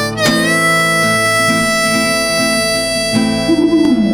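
Harmonica holding long chords over acoustic guitar, a new chord coming in with a slight upward bend shortly after the start: the closing notes of the song.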